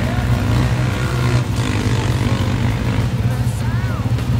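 A four-wheeler ATV engine running steadily at low, even throttle as the quad drives on sand, with a few short gliding tones toward the end.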